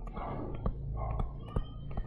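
Soft murmured speech with a few light clicks from a stylus tapping a tablet screen while handwriting, over a low steady hum.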